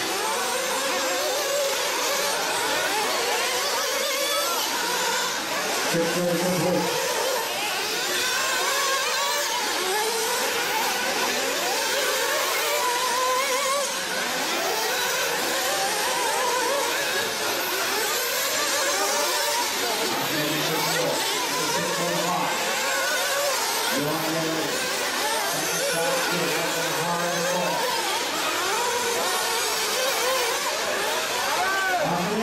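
Several 1/8-scale nitro buggies' small two-stroke glow engines revving up and down over one another as the cars race. The high engine pitches rise and fall continually.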